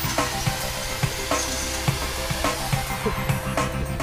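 Hand-held electric drill boring through 4130 chromoly steel tubing, a steady grinding hiss of the bit cutting. Background music plays over it, and a man laughs near the end.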